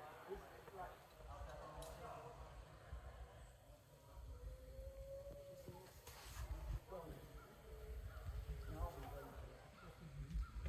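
Faint, distant voices of people talking over a steady low rumble, with a single held note about five seconds in.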